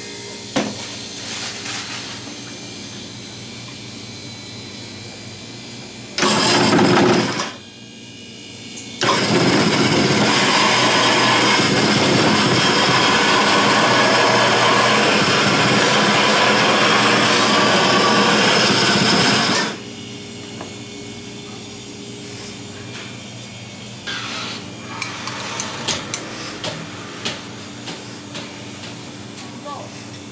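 Electric snow-ice shaver shaving a flavoured ice block: a short loud burst about six seconds in, then a loud, steady shaving noise from about nine seconds until it stops abruptly at about twenty seconds. A steady low hum runs beneath, with small clicks and knocks near the end.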